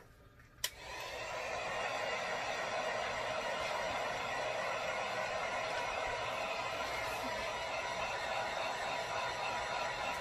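A heat gun clicks on about a second in and runs with a steady blowing hiss, brought up to speed over about a second. It is blowing hot air over freshly poured epoxy to pop its bubbles.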